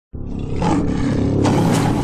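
A lion roaring: one long, deep roar that starts a moment in.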